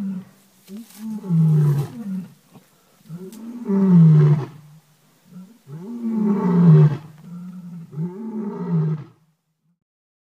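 A large wild animal calling: four long, deep calls spaced about two seconds apart, each rising and then falling in pitch.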